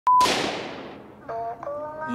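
Animated gunshot sound effect: one sharp bang with a long fading echo, followed about 1.3 s in by held musical tones.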